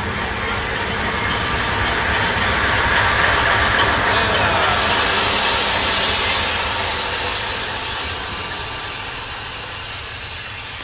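DF7G-C diesel locomotive's engine and cooling fans running loud at close range while the trains pass each other, over a steady rail rumble. The noise swells to a peak about three to four seconds in as the engine compartment goes by, then fades, with a hiss rising from about halfway.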